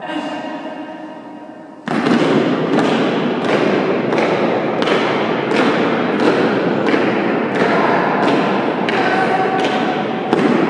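A drawn-out shouted military command, then soldiers' boots stamping in step on a stone floor, about three steps every two seconds, each step echoing heavily through a large stone hall.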